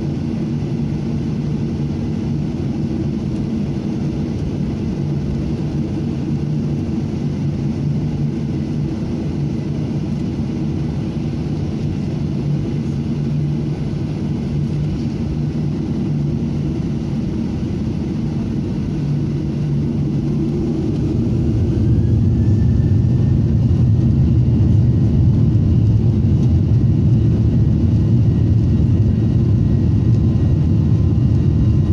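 Jet airliner cabin noise from a window seat over the wing, most likely a Boeing 737: a steady low rumble while taxiing. About two-thirds of the way through, the engines spool up with a rising whine and the sound grows louder as thrust comes up for takeoff.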